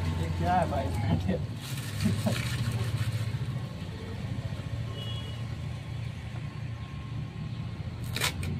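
Packing tape being handled and pulled off a cardboard parcel box, with a few short scratchy tearing noises about two seconds in, over a steady low hum that drops back after about three seconds.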